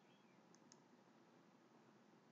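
Near silence with one faint computer mouse click about half a second in; the button's press and release come as two soft clicks close together.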